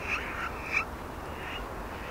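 About three short, faint animal calls, frog-like, spaced roughly two-thirds of a second apart over low background noise.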